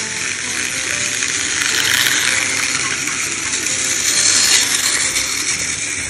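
Battery-powered Plarail toy trains running on plastic track: a steady buzzing rattle of the small motors, gears and wheels, growing a little louder over the first couple of seconds.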